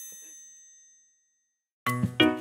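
A bright, high-pitched chime sound effect ringing out and fading away over about a second and a half, then a short silence before upbeat children's music starts near the end.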